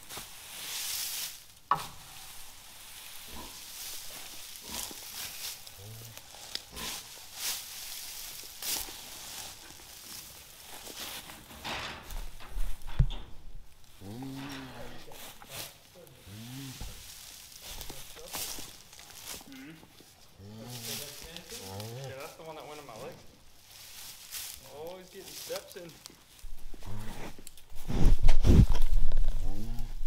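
Jersey cow licking her newborn calf in straw bedding: repeated scratchy rasps of the tongue and rustling straw, with a few soft, low cow calls in the middle. Near the end, a loud low rumble of handling noise on the microphone.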